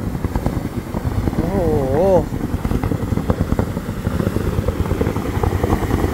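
Hot-spring geyser jet blasting water into its pool: a loud, steady rushing and splashing of falling water and spray, very strong. A man's "wow" rises over it about a second and a half in.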